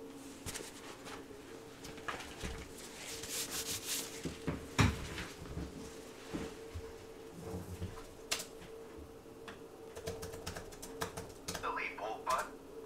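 Irregular light clicks and taps, with one sharper knock about five seconds in, over a faint steady hum.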